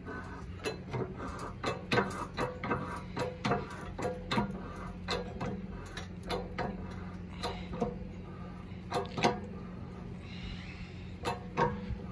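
Hydraulic bottle jack on a shop press being pumped by its handle: metallic clicks and knocks, about two to three a second, as the ram extends. A steady low hum runs underneath.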